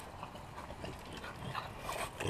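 French bulldogs close to the microphone making short, scattered dog sounds, louder toward the end.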